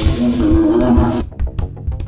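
A loud monster roar, a harsh growling voice that breaks off about a second in, over background music with a steady drum beat.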